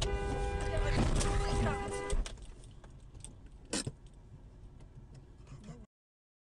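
Car horn sounding one long steady blast for about two seconds over engine and road rumble, then cutting off. The rumble goes on more quietly, with a short sharp knock near four seconds in.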